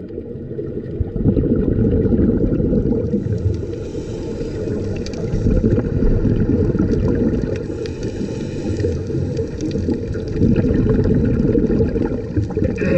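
Muffled underwater water noise picked up by a camera in a waterproof housing: a dense, steady low rumble of moving water with scattered faint ticks.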